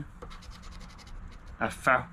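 A poker-chip scratcher scraping the coating off a scratch-off lottery ticket in quick, repeated short strokes.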